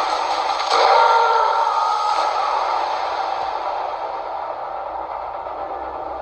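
An edited-in sound effect with heavy echo: a loud, hissing swell with a ringing tone about a second in that slowly fades away.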